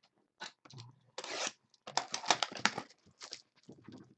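Plastic shrink wrap being torn and crumpled off a trading-card box: a short rip about a second in, then a burst of sharp crinkling and crackling, loudest a little after two seconds.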